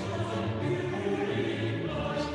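A choir singing, several voices holding sustained notes together.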